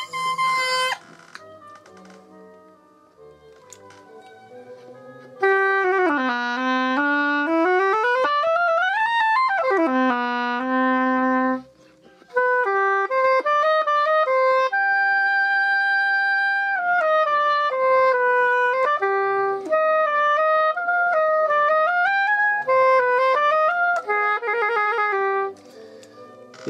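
Oboe played loud and close with a newly scraped reed to test it: a few seconds in it makes long sliding sweeps up and down in pitch, then plays a melodic passage of held and moving notes. The reed vibrates freely, and the player judges it would work very nicely.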